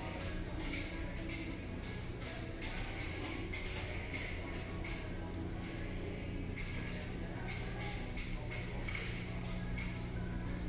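Faint in-store background music over the steady low hum of a large store, with irregular light clicks and rustles throughout.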